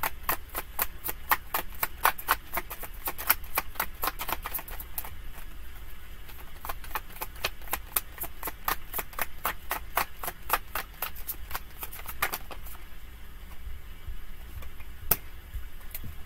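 A tarot deck being shuffled by hand: a rapid run of card clicks and slaps, dense for the first few seconds, then sparser and stopping about three-quarters of the way through, with one more click near the end.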